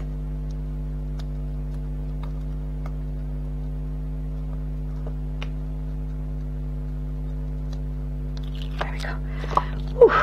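Steady low hum throughout, with faint scattered clicks as fingernails pick at the backing of double-sided tape stuck to card, and a short rustle of card being handled near the end.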